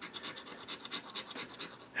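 Scratching the scratch-off coating from a lottery scratch ticket with a small scratcher: quiet, rapid, even strokes, about ten a second, uncovering a symbol.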